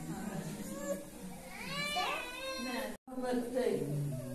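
A baby's high-pitched vocalising, with rising and falling coos or whimpers, over women's quiet talk. The sound drops out abruptly for a moment about three seconds in.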